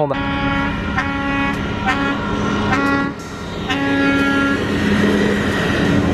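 A train horn sounds about five short blasts, each roughly half a second to a second long, followed by a longer, lower tone, over the low rumble of a moving car.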